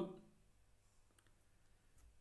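Near silence: room tone with a couple of faint clicks about a second in.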